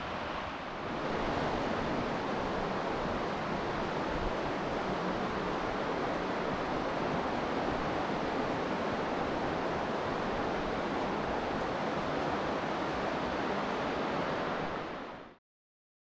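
Steady rushing of whitewater from the Deschutes River's rapids, growing slightly louder about a second in and cutting off abruptly near the end.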